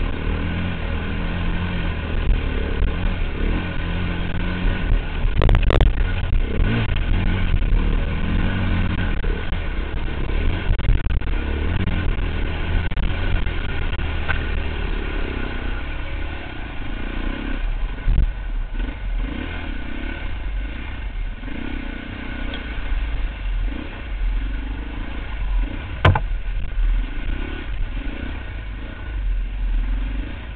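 Dirt bike engine running under load as the bike ploughs through shallow floodwater, then rides on a muddy trail. There are two sharp knocks, one about five seconds in and one near the end.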